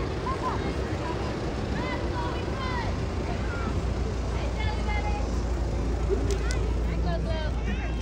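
A convertible car driving slowly past, a low rumble under scattered voices of onlookers along the street.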